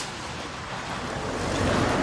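A car passing close by, its engine and tyre noise growing louder toward the end. There is a short click right at the start.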